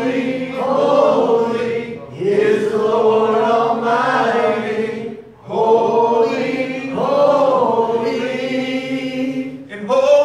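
Worship singing: voices singing a slow chorus in long held notes, in three phrases with short breaks about two seconds and five and a half seconds in.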